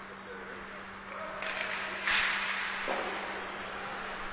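Ice hockey rink ambience during play: a steady low hum under faint distant voices. About a second and a half in, a broad hiss of play on the ice rises, is loudest in the middle and then eases off, with one light click near the end.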